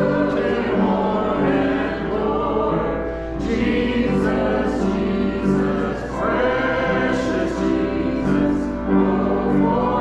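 Church congregation singing a hymn together in long held notes.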